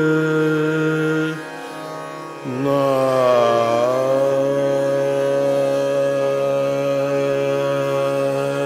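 Male Hindustani classical voice singing long sustained notes in raga Shudh Kalyan at slow vilambit tempo, over a tanpura drone. The first held note breaks off about a second and a half in. After a brief lull, a lower note starts, sags slightly in pitch and is then held steady.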